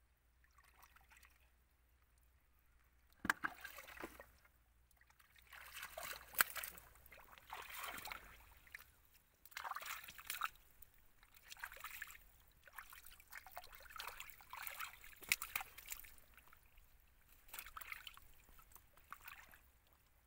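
Hands sloshing and splashing in shallow muddy water in irregular bursts as they grope through the mud for fish, with a couple of sharper slaps.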